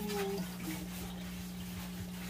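Styrofoam packing and cardboard rubbing as an appliance is slid out of its box: a short squeak right at the start, then light rustling and scraping, over a steady low hum.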